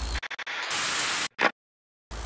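TV-static hiss sound effect of a glitching logo animation. A few stuttering crackles come first, then a burst of static about half a second long that cuts off sharply. One short, loudest burst follows, then silence.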